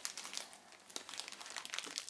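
Toy packaging crinkling as a small figure is taken out of it, a run of faint, quick crackles.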